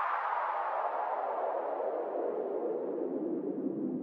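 A synthesized whooshing noise sweep in an electronic dance track, sliding steadily down in pitch from high to low as the track winds down.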